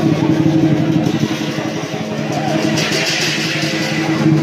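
Hakka lion dance percussion, drum with clashing cymbals and gong, playing continuously and loudly. A steady low hum runs underneath. The cymbals come through brighter about three seconds in.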